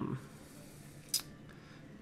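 Quiet room tone with one short, sharp click about a second in.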